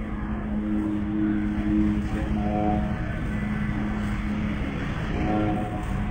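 A voice holding long, steady chanted notes, with the pitch of the upper notes shifting every second or so, over the murmur of a crowd.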